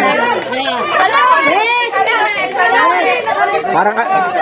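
A group of people's voices talking and calling out over each other, excited, with pitch swooping up and down.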